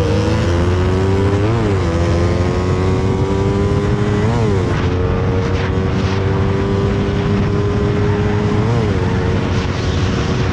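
Motorcycle engine pulling hard at full throttle, its pitch climbing slowly in each gear and dipping briefly at upshifts about one and a half seconds in, about four and a half seconds in, and near the end, over a heavy rush of wind on the microphone.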